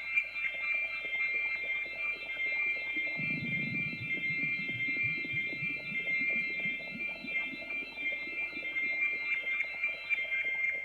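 Electronic synthesizer music: a cluster of high sustained synth tones held throughout, with a lower, fast-fluttering synth line coming in about three seconds in.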